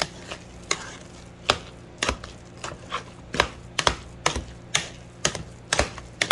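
Hand potato masher working cooked potatoes in a metal pot. The masher knocks against the pot about twice a second at an uneven pace.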